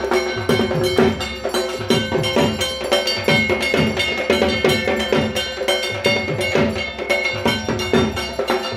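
Drums beaten in a quick, steady rhythm, with metal percussion clanging and ringing over them: the accompaniment to a Hindu puja arati.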